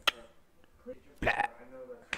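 A man's short vocal exclamation, "blah", about a second in, after a single sharp click at the start.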